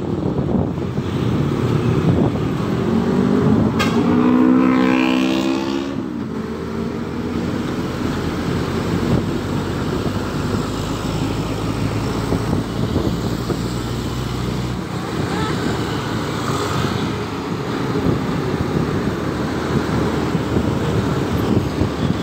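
Moving traffic beside a concrete mixer truck: engine and road noise throughout. About four seconds in, an engine revs up, its pitch rising for a couple of seconds. After that the engine and road noise runs on steadily.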